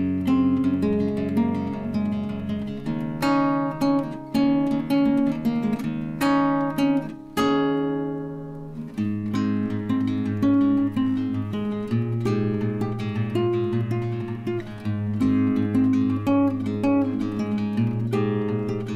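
Acoustic guitar music, chords strummed in a steady rhythm, with one chord left to ring out and fade about seven seconds in before the strumming picks up again.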